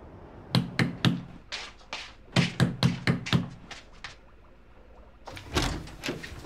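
Knuckles knocking on a wooden apartment front door: several quick groups of sharp raps over about three and a half seconds. Near the end comes one heavier, deeper thump as the door is pulled open.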